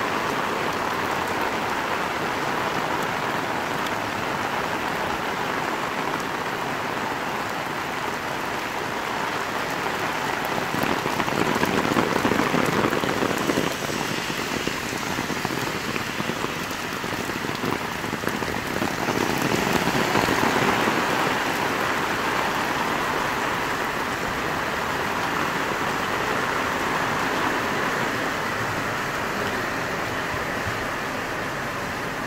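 Heavy rain pouring steadily onto pavement and a waterlogged street. It grows louder for a few seconds twice, about a third of the way in and again about two-thirds through.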